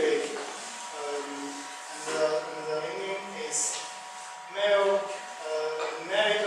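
Indistinct speech that was not transcribed, over a faint steady high-pitched whine.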